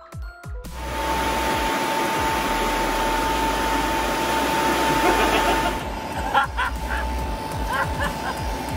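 A heap of electric box fans, pedestal fans and a blower running together: a steady rush of air with a high motor whine, starting just under a second in and easing off about six seconds in. Short squeaky chirps follow near the end.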